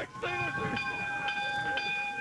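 A long, steady horn-like blast at one pitch, starting just after a laugh and held to the end.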